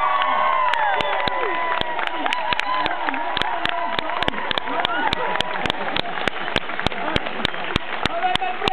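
Crowd cheering and shrieking, with applause building from about a second in; one pair of hands clapping close by gives sharp claps about three to four a second.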